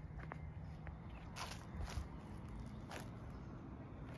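Footsteps walking over dry grass and wood-chip mulch: a few separate crunching steps roughly a second apart, over a low steady rumble.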